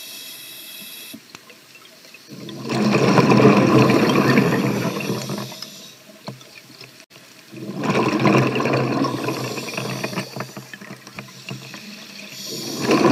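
Scuba diver breathing underwater through a regulator: two long rushes of exhaled bubbles, about five seconds apart, with a faint hiss in the pauses between breaths.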